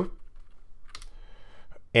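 Computer keyboard being typed on: a few soft keystrokes, the clearest about a second in.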